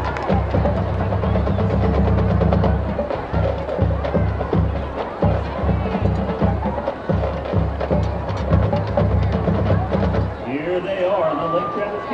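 Outdoor stadium ambience: a choppy low rumble with scattered clicks and taps, and indistinct voices. The rumble drops out about ten seconds in.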